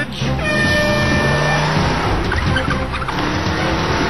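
Engine-like mechanical noise of combat robots moving in an arena, with steady whining tones over music.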